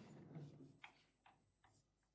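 Faint marker writing on a whiteboard: a rubbing stroke fading out, then three short ticks of the pen tip about 0.4 s apart.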